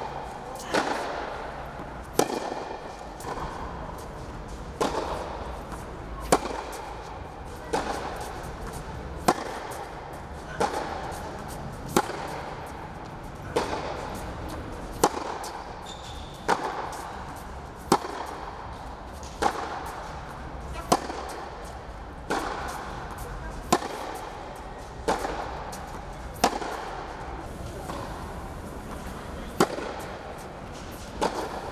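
Tennis rally in an indoor tennis hall: racket strikes on the ball about a second and a half apart, a loud near hit alternating with a fainter hit from the far end of the court, each echoing briefly off the hall.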